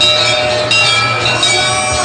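Continuous ringing of bells, many metallic tones sounding at once, over music; loud and unbroken.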